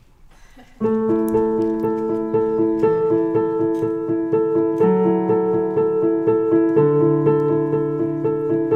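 Piano entering about a second in and playing a steady pattern of repeated chord notes, the chord changing every two seconds or so: the intro of a song.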